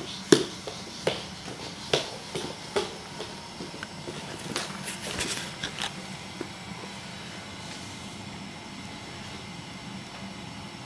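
Irregular soft knocks and slaps of a baby's palms and knees on a hardwood floor as it crawls, several in the first few seconds and a short flurry around the middle, then they stop. A steady low hum runs underneath.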